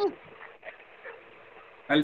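A brief cry with falling pitch, lasting a fraction of a second at the start, heard through a participant's unmuted video-call microphone, followed by faint background noise.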